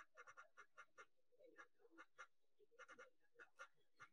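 Faint, light clicks and ticks in quick irregular runs of two or three, from a small earring being handled at the ear.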